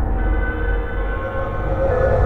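Dark ambient music: a deep, steady rumble with several held tones above it and no beat.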